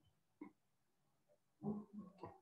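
Near silence: room tone, with one faint short sound about half a second in and a man's voice starting again near the end.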